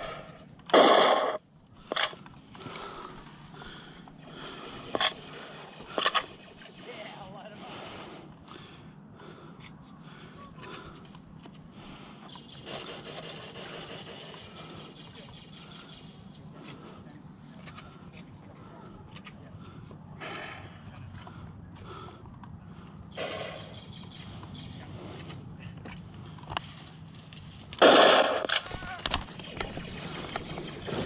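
Sporadic sharp laser tag blaster shots and brief indistinct voices over a steady low outdoor background. The loudest bursts come about a second in and again near the end.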